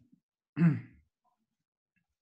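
A person's single brief voiced sound, a short sigh-like 'mm' or 'ah' lasting about half a second, a little after the start.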